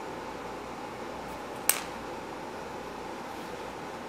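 A plastic sculpting tool set down on the wooden tabletop with a single sharp click a little under halfway through, over a steady faint room hum.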